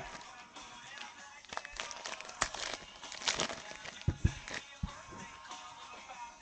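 Trading cards and foil pack wrappers being handled on a table: scattered light clicks and rustles, with a few soft thumps about four seconds in. Faint background music plays under it.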